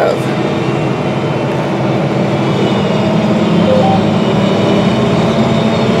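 Steady drone inside the cab of a John Deere R4045 self-propelled sprayer, a 346 hp machine, driving across the field. Engine hum and running noise carry on evenly, with no change in pitch.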